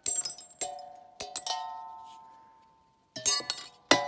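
Glass clinking and ringing: several light strikes in the first second and a half, each leaving clear pitched tones that fade out, then a fresh cluster of clinks near the end.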